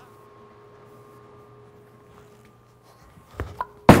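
Faint steady hum of a quiet bowling alley for about three seconds, then a light knock and, just before the end, a loud thud as a bowling ball is released and lands on the lane, followed by its roll.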